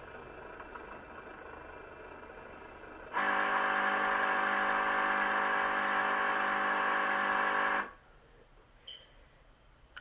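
Cricut Explore Air 2 cutting machine's motors starting up just after power-on: a faint steady hum, then from about three seconds in a louder, steady electric whine that holds one pitch for about five seconds and cuts off suddenly.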